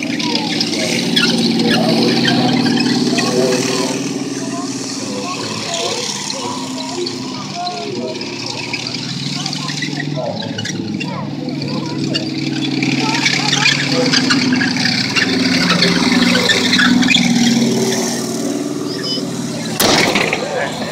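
M3 Stuart light tank driving past, its engine running with the tracks clattering, growing louder about two seconds in and again near the end.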